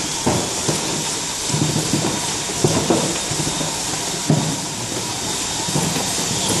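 Automatic vial labeling machine running: a steady hiss with irregular low clattering, roughly every half second to a second, as the conveyor carries vials past the label head.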